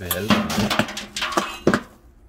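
Steel ash pan from a wood stove tipped into a metal ash bucket, scraping and clattering against the bucket as the ash slides out, with two sharp metal knocks late on as it is knocked against the rim.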